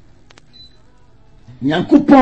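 A pause in a man's speech: two quick clicks about a third of a second in, then his voice starts again about one and a half seconds in.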